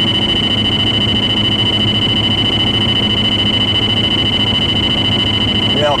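Valentine One radar detector sounding a continuous high-pitched Ka-band alert, unbroken and loud, as it locks onto a Maryland State Trooper's constant-on Ka-band radar close by. Low road and engine rumble from inside the moving car lies beneath it.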